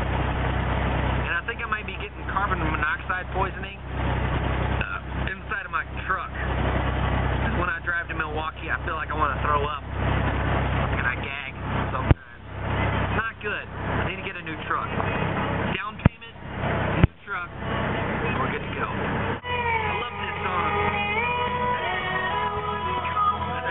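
Steady low rumble of a car heard from inside the cabin while driving, with indistinct voices over it. The rumble drops out in a few sudden breaks after the middle, and music with sustained notes starts near the end.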